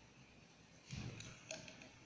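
Faint handling noises on a fibre optic fusion splicer: a soft thump about a second in, then a few light clicks as a hand reaches over the machine.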